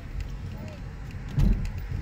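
Car cabin noise from a slowly moving car: a steady low rumble of engine and road. About one and a half seconds in there is a short, loud low thump.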